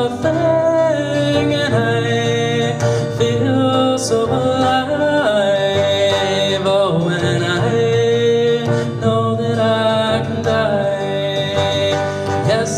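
A man singing live to his own acoustic guitar, holding long notes over the strummed chords.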